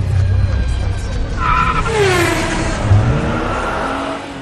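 Race-car sound effect: a car engine with a tyre squeal over a steady low rumble. The pitch sweeps down and back up around the middle.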